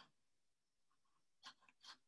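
Near silence, with two faint, short scratchy strokes in the second half: a watercolour brush dabbing on paper.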